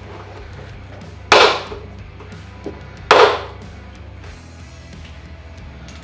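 Plastic retaining clips on a running board being pried out with a trim removal tool: two sharp pops about two seconds apart, over soft background music.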